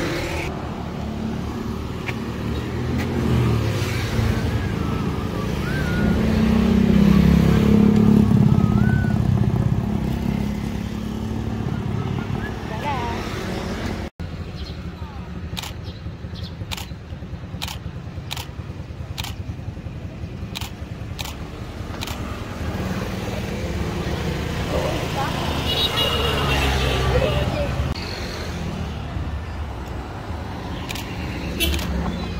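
Road traffic on a two-lane road: motor vehicles run past over a steady low rumble, with one passing loudest about six to ten seconds in. A run of light clicks comes in the middle, and faint voices are heard.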